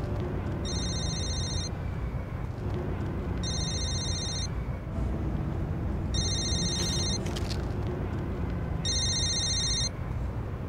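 Mobile phone ringing: four rings of a high, trilling electronic ringtone, each about a second long and spaced a little under three seconds apart, over a steady low background rumble.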